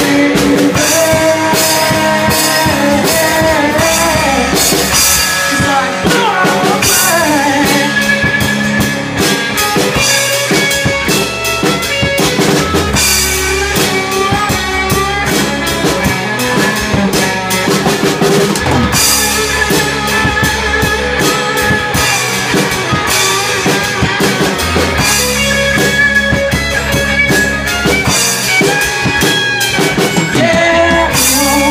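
A small band playing live, an instrumental passage: a drum kit with snare, bass drum and cymbals driving the beat under electric and acoustic guitars.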